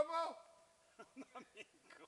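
A man's voice finishing a spoken phrase, then only a few faint, short voice sounds about a second in.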